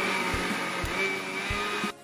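Electric mixer-grinder motor running with a steady whine while its stainless-steel jar grinds grated coconut for coconut milk. It runs for about two seconds, then stops.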